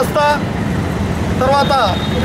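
A man speaking Telugu in short phrases with a pause between them, over a steady low rumble of background noise.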